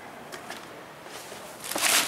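Thin plastic bag crinkling as it is grabbed and handled, starting faint and getting loud near the end, after a few small handling clicks.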